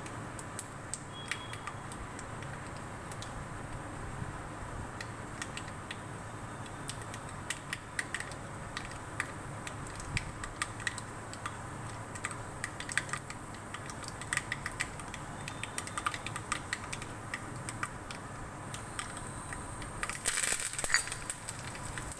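Mustard seeds, urad dal and cumin crackling in hot oil in a small kadai for a tempering: a scatter of sharp pops that grows busier. About twenty seconds in comes a loud burst of sizzling as curry leaves go into the oil.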